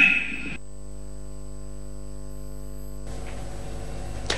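Steady electrical mains hum, a low buzz with many evenly spaced overtones, lasting about two and a half seconds after a man's speech breaks off. It then gives way to a faint hiss.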